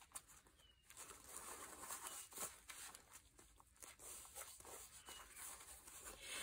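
Near silence, with faint soft rustling of hands pressing and smoothing glued paper onto a journal page.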